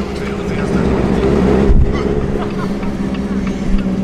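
A car's engine and exhaust running at low speed, heard from inside the cabin as a steady low hum and rumble. The sound swells briefly about a second and a half in.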